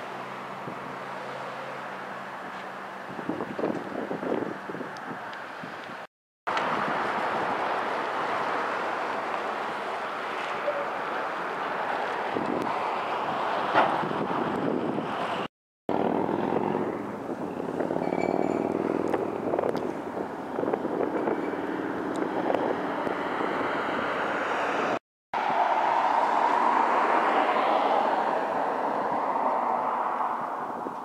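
Outdoor city street ambience with traffic going by, a steady noisy wash in several separate clips. Each clip is cut off by a brief dropout to silence about 6, 16 and 25 seconds in.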